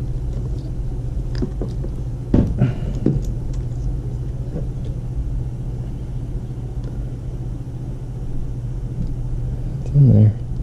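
A steady low hum, with a few small clicks and rustles of wire connectors and wiring being handled close by.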